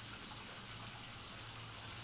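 Faint steady background hiss with a low hum underneath: room tone.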